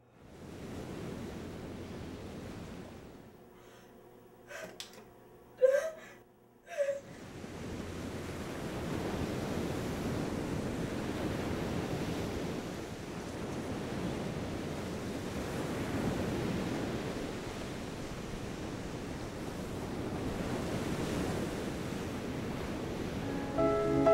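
Steady wash of ocean surf breaking on a beach. A few short, sharp sounds stand out about five to seven seconds in, and music comes in just before the end.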